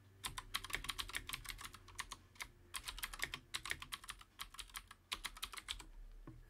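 Typing on a computer keyboard: quick runs of keystrokes in several bursts with short pauses between them, as words are entered.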